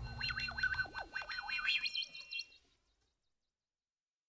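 Wavering, gliding synthesizer tones with a few faint clicks, the closing tail of a song, dying away about two and a half seconds in.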